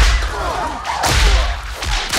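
Two bullwhip cracks about a second apart, each backed by a deep boom.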